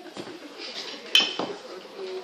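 Tableware clinking on a table: a few light knocks and one sharp, ringing clink a little after a second in.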